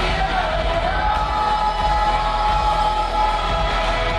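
Live worship band playing, with women's voices singing lead over a drum kit. One voice holds a long, steady note through the middle.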